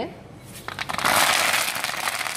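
Dried chillies and fresh curry leaves dropped into hot cooking oil in a wok: after a brief quiet the oil bursts into a loud crackling sizzle, loudest just after it starts and easing slightly as they go on frying.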